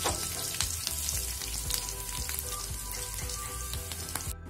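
Anchovies, green chillies and curry leaves sizzling and crackling steadily in hot oil in a pan, stirred with a steel spoon.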